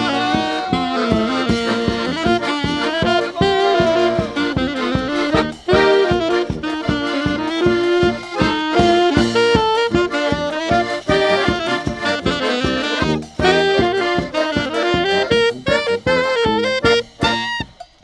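Folk wedding band playing an instrumental interlude: saxophone carrying the melody over tuba bass and accordion, with a drum keeping a fast steady beat of about four strokes a second. The music stops near the end.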